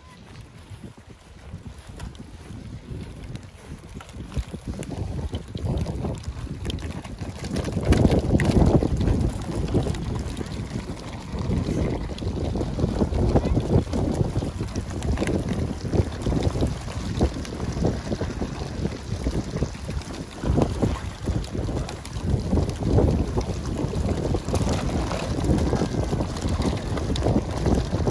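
Wind buffeting the microphone in gusts, a low, uneven noise that is faint at first and much louder from about eight seconds in.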